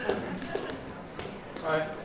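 Quiet hall room tone with a few faint ticks, then a voice saying "Hi" near the end.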